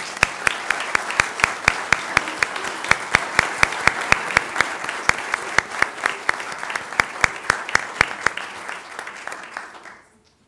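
Applause from a small group, with one set of hands close by clapping steadily about three to four times a second above the rest. The close clapping stops about eight seconds in, and the rest dies away just after.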